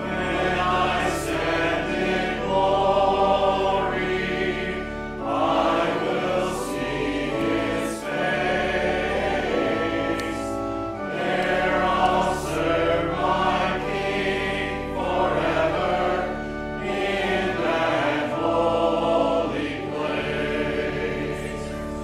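Church congregation singing a hymn together, phrase by phrase with short breaks between lines, over steady low held notes.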